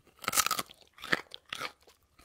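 A raw carrot being bitten and chewed: three crisp crunches, about half a second, one second and one and a half seconds in.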